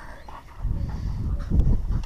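A German shepherd having her head rubbed dry with a towel: rubbing and handling noise, with a low rumble that gets louder about half a second in and peaks past the middle.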